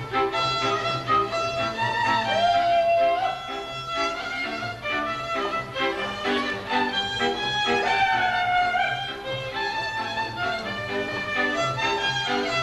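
Hungarian folk string band playing dance music: a fiddle carries the melody, with slides, over a steady pulsing accompaniment of chords and bass.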